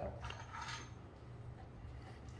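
Faint mechanical clicking and rubbing of IWI UZI Pro pistol parts being worked by hand during disassembly, mostly in the first second.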